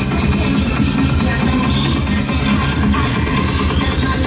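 Loud electronic dance music with a heavy, steady bass beat.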